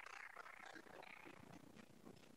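Near silence: faint room tone, with a few faint hand claps that die away within about the first second.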